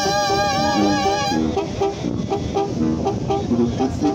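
Live Mexican banda brass band playing: a held, wavering horn note for the first second and a half, then short, punchy trombone notes in a steady rhythm over a bass drum.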